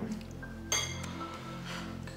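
A single bright glass clink about two-thirds of a second in, ringing briefly, over soft background music.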